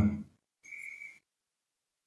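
A short, high, steady whistle-like tone lasting about half a second, starting about half a second in, then silence.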